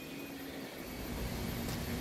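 Steady outdoor rumble of distant engines, slowly growing louder, with a faint low hum under it.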